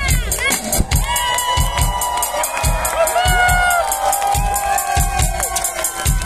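Live rock band playing: a steady drum beat with kick drum and cymbal ticks under sustained, bending electric guitar notes.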